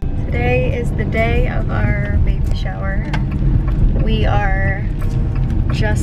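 Car cabin noise while driving: a steady low rumble of engine and road noise heard from inside the car, with talking over it.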